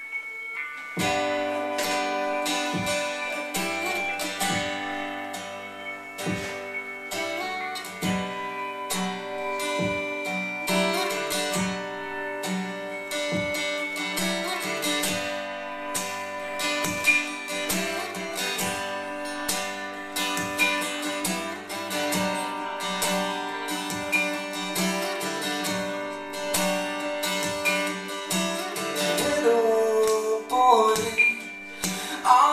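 Solo acoustic guitar playing a song's instrumental opening, with a steady rhythm of ringing strummed and picked notes. A voice starts to sing right at the end.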